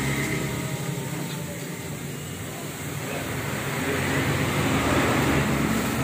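A motor vehicle passing by: a running engine with road noise that swells to its loudest about five seconds in and then begins to fade.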